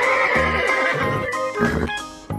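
A horse whinnying: one long neigh of about two seconds, over background music with a steady beat.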